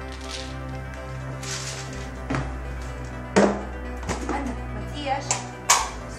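Background music with several sharp knocks and clatters of pet food tins and a metal bowl being handled and set down, the loudest near the end.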